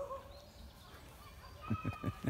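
Quiet outdoor ambience with a few faint, thin calls. Near the end a man starts laughing in short, rapid bursts.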